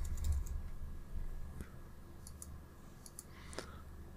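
Computer keyboard typing and mouse clicks: scattered light, irregular keystrokes spread through the few seconds, over a low hum that fades during the first second.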